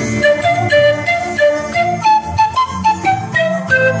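Zampoña, an Andean bamboo panpipe in D, playing a melody of short, separate notes that climb and then fall back, over a lower accompaniment.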